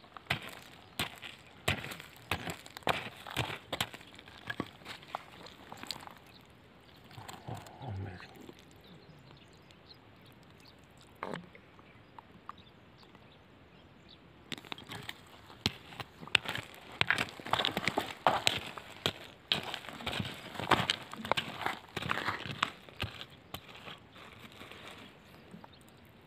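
Small stones and gravel being handled and rummaged through by hand: short clicks and scrapes of pebbles, in two busy spells with a quieter pause in between.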